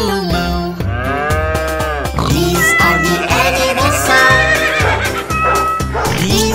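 Upbeat children's song with a steady beat, over which a few long, drawn-out cow moos rise and fall.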